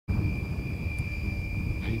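PowerWind wind turbine running: a low, unsteady rumble with a steady high-pitched whine over it.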